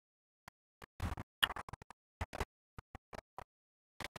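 Faint, scattered clicks and rustles of handling noise as the camera is moved around, with dead quiet between them; the strongest click comes about one and a half seconds in.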